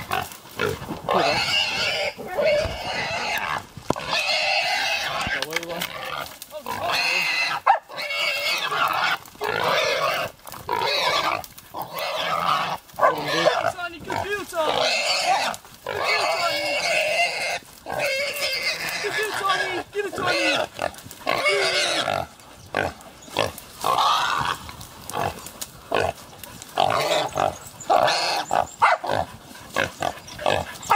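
Feral pig squealing loudly and over and over while gripped by hunting dogs, a long run of cries of about a second each with short breaks between them.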